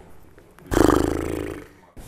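A man's voice making one loud, low, drawn-out vocal sound without words, about a second long. It starts suddenly and trails off.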